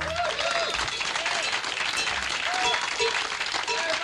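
Studio audience clapping and cheering after a song, with repeated short whoops over the applause.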